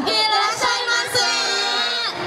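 Idol group's young female voices singing amplified over a backing track, with held notes and a pitch slide downward near the end.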